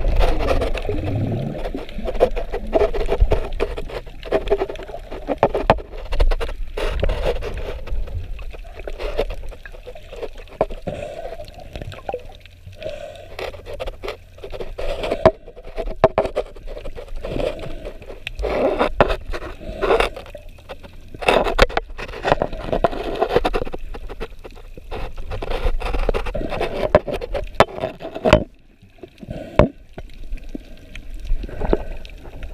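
Water heard through a waterproof action-camera housing: muffled sloshing that swells and fades every few seconds, with frequent sharp knocks and scrapes as the housing is handled and bumps against the body.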